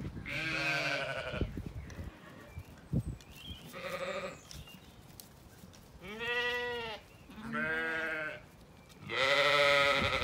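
Zwartbles sheep bleating, five calls in all, each with a wavering pitch. The last, near the end, is the loudest.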